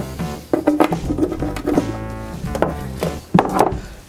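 Background music with plucked, guitar-like notes, broken by a few sharp knocks.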